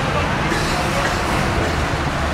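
Busy city street ambience: steady traffic rumble with the voices of a crowd talking nearby.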